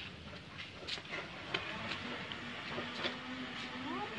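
Light, scattered clicks and rustles of hands working potting compost around a coconut bonsai in its pot, with a faint steady hum that comes in about two-thirds of the way through.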